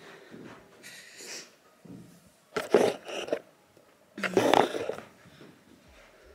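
A woman's short breathy vocal sounds, twice, as she climbs into a large built-in wardrobe, with faint rustling and movement noise in between.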